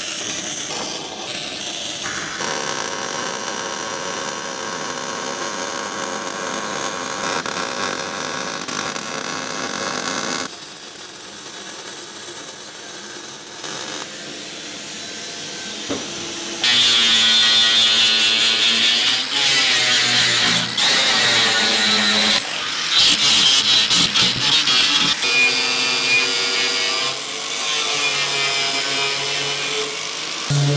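MIG plug welding on a sheet-steel dash, a steady hiss for about the first ten seconds. From about halfway a handheld disc sander runs on the welds in loud spells, its pitch rising and falling as it is pressed on and eased off.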